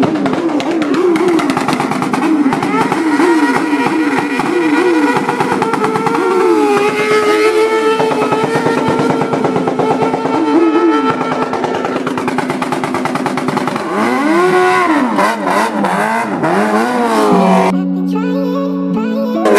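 Motorcycle engine revved hard in quick repeated blips, its pitch rising and falling about twice a second, then held high for a few seconds in the middle before more blips near the end.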